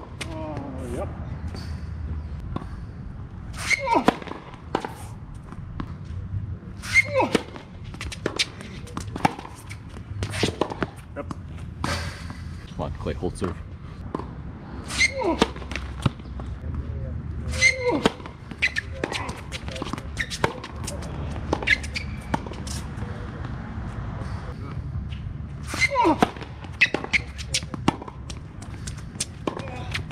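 Tennis rallies on a hard court: sharp racket-on-ball strikes a second or two apart, with ball bounces and players grunting on their shots.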